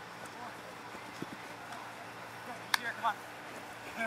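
Open-field ambience with a steady low hiss and faint, distant shouts from players. A single sharp click comes about two-thirds of the way through, and a couple of soft knocks come a little after one second.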